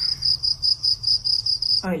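Insect chirping: a high, even run of about five chirps a second that stops suddenly near the end.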